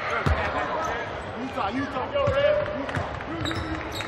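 A basketball bouncing on a hardwood court a few times, with scattered voices echoing in the arena.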